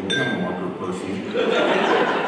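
A man talking, then laughter breaking out in the room about one and a half seconds in. A brief faint clink sounds right at the start.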